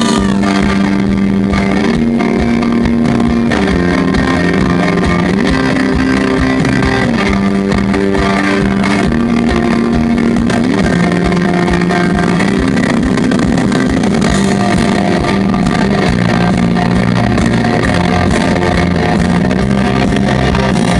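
Live rock band playing an instrumental passage without vocals: electric guitar and bass guitar over drums, loud and steady, with held notes that shift every second or two.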